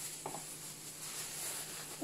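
Faint crinkling of a thin plastic bag and disposable plastic gloves as groceries are handled, with one light tap about a quarter second in.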